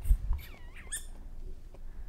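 A woman whimpering in distress: a couple of high, thin whines that dip and rise again, about half a second in.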